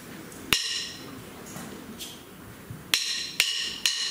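Wooden drumsticks clicked together: one sharp click, then near the end a steady count-in of clicks about half a second apart, counting the band in.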